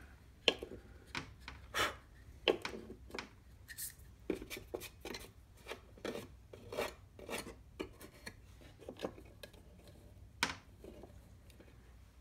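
A casting pattern being handled and set down on the plywood molding board of a wooden flask: irregular light scrapes, rubs and clicks, with a sharper tap about half a second in and another near the end.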